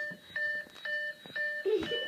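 Electronic beeping: a steady, multi-pitched beep repeated four times, about two a second.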